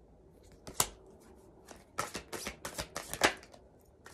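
A deck of oracle cards handled and shuffled by hand: one sharp card snap about a second in, then a run of quick card clicks and flicks near the end, the last the loudest.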